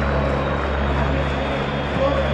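Steady crowd noise from the stands of a packed football stadium during play, with a low drone underneath.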